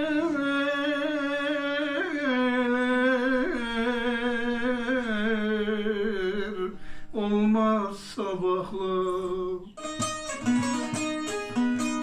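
A man singing long, wavering held notes of a Turkish folk song over a bağlama (long-necked Turkish lute). The voice breaks off about seven seconds in, and from about ten seconds the bağlama plays quick plucked notes on its own. His throat is a little sore and the singing somewhat off pitch, as the uploader says.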